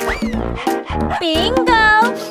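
Bouncy children's background music with a steady bass beat, and a cartoon puppy's voice barking over it in the second half.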